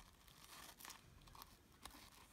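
Faint rustling of sheer ribbon and paper handled while a bow is tied by hand, with a few soft crackles.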